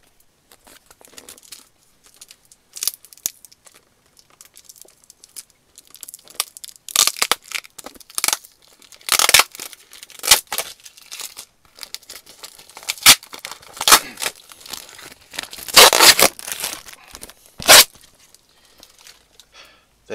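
A small cardboard parcel being ripped open by hand: a run of short, irregular tearing bursts, which grow louder and come thicker in the second half.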